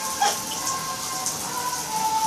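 Water dripping and pattering in a bathtub, over a steady hiss. A faint thin tone sits underneath, and a short falling squeak comes about a quarter second in.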